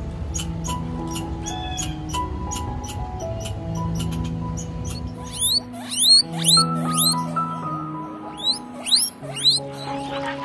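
Background music with a steady melody of held notes. Over it comes a run of short, evenly spaced clicks in the first half from a grey squirrel, then, from about halfway, a guinea pig's loud, quickly rising high-pitched squeaks, about eight of them.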